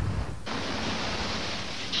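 Steady rushing of ocean surf that starts abruptly about half a second in, after a brief low wind rumble.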